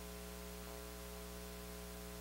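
Faint, steady electrical mains hum with a layer of hiss.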